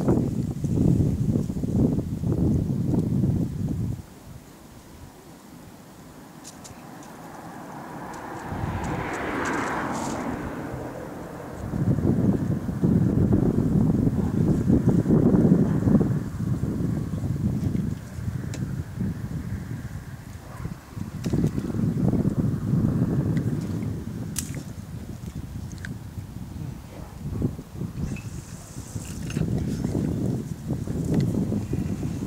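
Wind buffeting the microphone in gusts, with a lull of a few seconds early on, and a few light clicks of handling.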